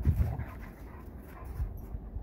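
Two dogs at play, a puppy and a standard poodle, making short dog sounds in the first half second, then quieter.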